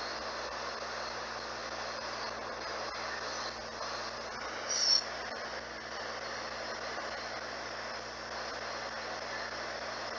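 Ghost box (spirit box) radio sweeping through stations: a steady hiss of static with a few faint ticks, and a brief louder blip of sound about five seconds in.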